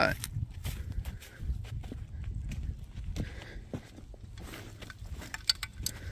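Footsteps on dry dirt and grass, with scattered soft crunches and clicks, over a low rumble.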